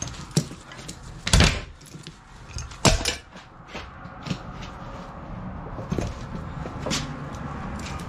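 Ratchet tie-down straps being released from around an ATV tire: two loud sharp clacks about a second and a half apart as the tensioned buckles let go, then lighter clicks and knocks of the strap hardware. A steady hiss runs under the second half, air flowing into the tire through the chuck to keep the beads seated.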